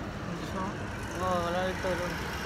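Steady low rumble of idling motor vehicles, with a soft voice speaking briefly a little past halfway through.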